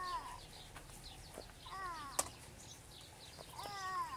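Cat meowing: short, falling calls repeated about every two seconds, over faint chirping of small birds. A sharp clink halfway through.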